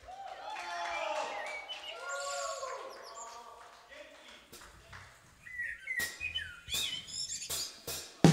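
Faint, bird-like chirping tones that glide up and down, followed near the end by a run of sharp clicks.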